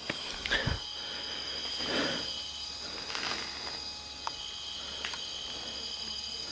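Steady high-pitched trilling of crickets, with a few faint knocks and scuffs of movement over debris.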